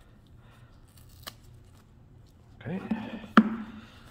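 Faint paper and cardboard rustling as the paper pull-tab seal is stripped off an iPhone 14 Plus box, with a small click about a second in and a sharp click near the end.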